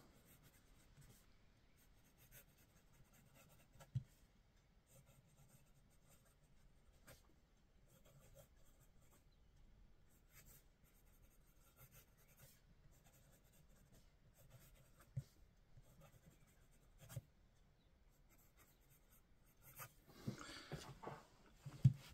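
Faint scratching of a fountain pen's double broad steel nib writing cursive across notebook paper, with a few light ticks, the sharpest about four seconds in.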